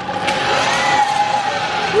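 Zip line trolley running along the steel cable as riders come in: a steady whine over a rushing hiss.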